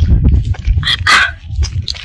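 Wind buffeting a phone microphone, a heavy uneven rumble. Short, sharp sounds rise above it near the start and about a second in.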